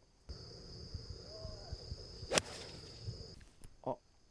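A golf club striking a ball: one sharp crack a little past halfway, over a steady high-pitched buzz and a low rumble of wind.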